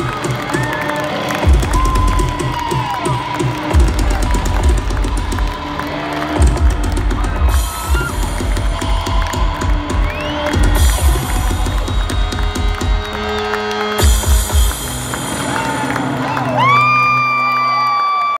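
A rock band playing live on stage with drums and sustained keyboard or guitar tones, loud, heard from within the audience, with cheering and whoops from the crowd over it. Near the end a rising tone settles into a long held note.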